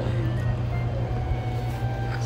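A steady low hum, with faint music playing in the background.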